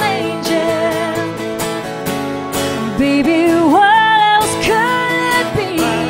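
Live country song: a woman singing long, held notes with vibrato over a strummed acoustic guitar.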